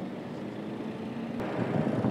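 Highway traffic: a heavy tipper truck's engine and tyre noise, growing louder as it approaches.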